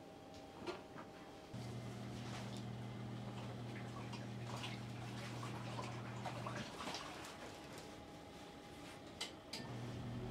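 Faint rustling of clothes and light clicks as laundry is hung over a wooden drying rack. A steady low hum comes in about a second and a half in and stops about five seconds later.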